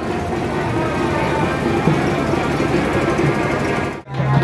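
Music playing steadily over dense street noise.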